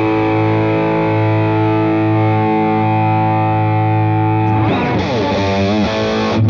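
Overdriven electric guitar, a Fender Custom Shop Double Esquire: a chord rings out for about four and a half seconds, then a slide leads into wavering, bent notes near the end.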